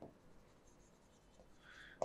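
Faint scratching of a stylus writing a word on the glass of an interactive display, with a slightly louder stroke near the end; otherwise near silence.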